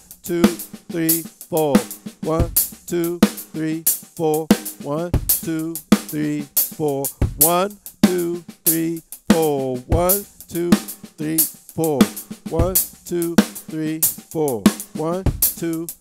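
Tama Starclassic drum kit played in time: a steady stream of paradiddle strokes on the drums, displaced by a single bass drum note so the sticking pattern shifts against the beat.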